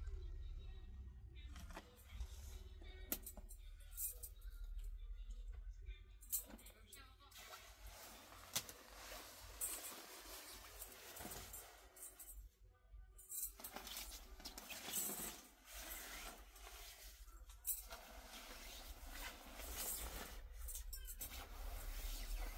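Clothes rustling and being handled as garments are pulled from a pile and sorted, with scattered light clicks, over faint background music.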